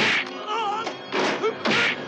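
Fight-scene punch sound effects: three heavy hits, the first at the start and two more close together just past the middle, over a background music score.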